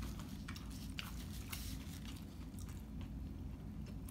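Eating sounds: quiet chewing with a few light, sharp clicks, over a steady low hum.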